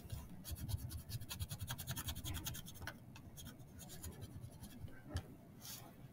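Red wax crayon scribbling on a paper plate: a quick, even run of short back-and-forth strokes for the first three seconds, then fewer, scattered strokes.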